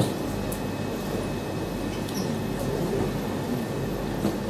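Steady room noise in a lecture hall: a continuous low electrical hum under an even hiss, with faint indistinct background murmur.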